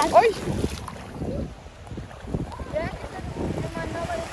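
Wind buffeting the microphone over small waves washing in the shallows, with brief voices at the start and near the end.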